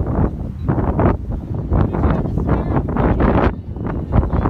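Gusty wind buffeting the phone's microphone in irregular surges, with a brief lull near the end.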